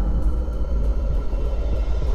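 Deep, steady low rumble from a cinematic logo-sting sound effect.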